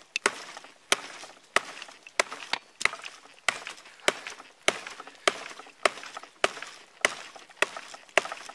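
Schrade SCAXE4 tactical tomahawk, one piece of steel with a heavy head, chopping into a three-inch branch: a steady run of about a dozen sharp chops, a little under two a second.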